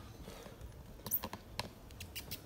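Handling noise of a phone camera being grabbed and carried: a few light clicks and knocks about a second in, with footsteps on a wooden floor.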